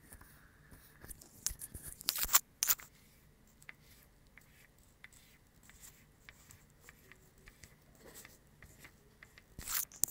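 Oil pastel strokes scratching across paper on a tabletop, in a short burst of quick strokes about one to three seconds in, then only faint occasional scrapes.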